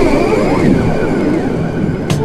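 Breakdown in an old skool jungle track: the breakbeat drops out, leaving a loud, jet-like sweeping whoosh with pitches sliding up and down across each other and no drums.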